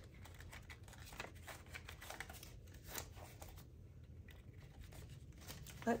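Paper banknotes being handled and gathered into a stack: faint, scattered crinkles and flicks of the bills.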